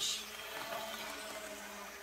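Quiet indoor room tone: a faint, steady hum with a soft hiss, with no distinct events.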